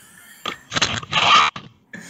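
A person's breathy, noisy vocal outburst, starting about half a second in and lasting about a second.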